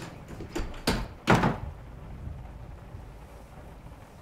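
A door being handled and shut: a few knocks, then a louder bang a little over a second in.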